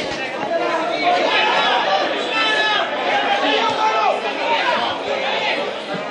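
Spectators chatting: several indistinct voices talking over one another.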